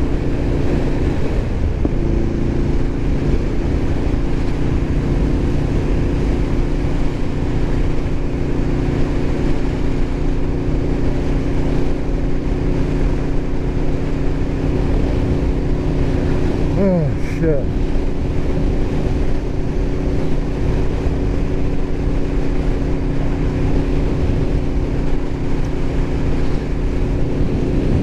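Aprilia RSV4 1100 Factory's V4 engine holding steady revs at cruise in sixth gear, under heavy wind rush from riding at highway speed. About two-thirds of the way through, a short falling-pitch whine sweeps past.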